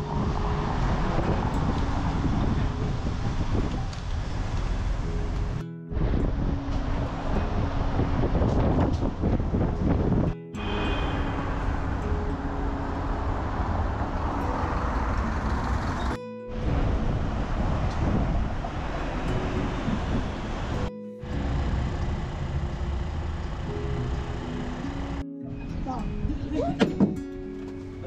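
Ride on the open top deck of a sightseeing bus: a steady low rumble of the bus, traffic and wind, with music playing along. The sound drops out abruptly five times for a split second where short clips are joined.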